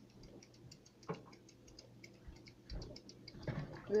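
Faint steady ticking, several ticks a second, with a few soft knocks.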